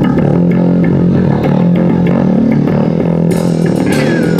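Live rock band playing: electric guitar and bass guitar holding a loud, sustained riff, with drum-kit cymbals coming in near the end.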